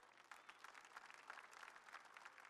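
Near silence, with faint distant applause: a thin, dense patter of hand claps.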